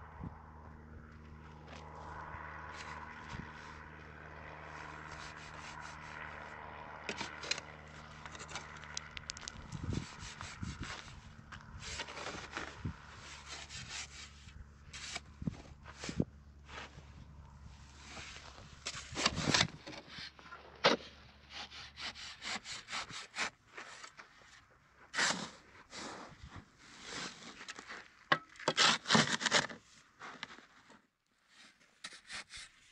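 Metal shovel scraping and scooping sand and cement mix, its blade grating on gravelly ground and against a steel wheelbarrow tray in irregular strokes that get louder and more frequent after the first third. A steady low hum runs underneath until about two-thirds of the way through.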